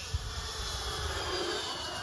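Twin electric ducted fans of a Freewing Me 262 RC jet flying past overhead: a high whine that falls slowly in pitch.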